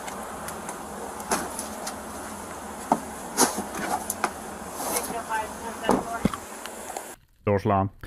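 Police body-camera audio at a roadside arrest: a steady background hiss and hum with scattered clicks, knocks and rustles as a handcuffed person is seated in a patrol car's back seat. A few faint voices come in past the middle, and the sound cuts off abruptly shortly before a man starts talking near the end.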